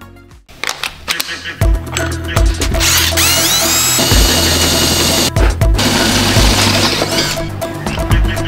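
Background music with a steady beat, over a cordless drill boring a hole through a cast iron pan lid.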